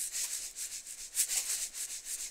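A fast rhythmic scraping hiss, about six strokes a second, with no voice in it.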